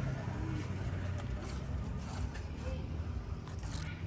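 Handling noise of a loudspeaker crossover circuit board being turned over in the hand: scattered light scrapes and clicks, over a steady low rumble.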